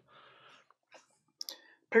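A few faint clicks from a laptop keyboard a second or so in, as someone searches on it, with a man's voice starting right at the end.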